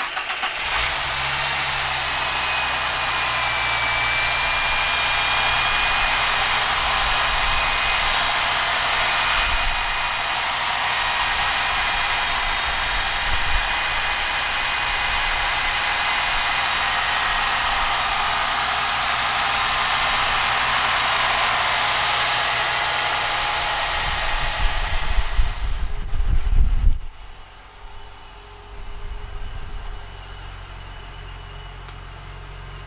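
Supercharged 3.8-litre V6 of a 1989 Ford Thunderbird Super Coupe idling steadily just after being started, heard close up over the open engine bay, with a thin high whine early on. Near the end the sound turns rougher and louder for a couple of seconds, then drops to a quieter idle.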